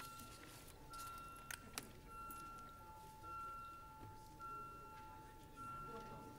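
Faint electronic beeping: a high tone sounds in pieces about a second long with short gaps, over a lower held tone, while a recorded vote is open. Two sharp clicks come about a second and a half in.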